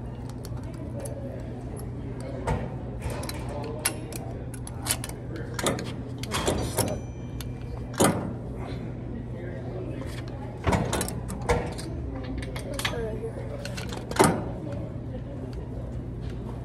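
Metal clicks and clanks from a gym cable machine as a bar handle is clipped onto the cable's carabiner and pulled, with irregular sharp knocks, the loudest about eight seconds in and near the end. A steady low hum runs underneath.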